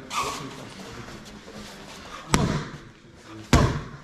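Boxing gloves smacking into focus mitts: two sharp punches about a second apart, the second louder.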